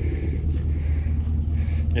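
An engine running steadily at idle, heard as a low, even rumble.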